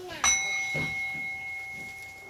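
A small bell or chime struck once about a quarter second in, ringing on with a clear high tone that fades slowly.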